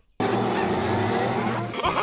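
Cartoon meme clip audio: a sudden, loud noisy sound effect with a steady low hum that lasts about a second and a half, then cartoon character voices begin near the end.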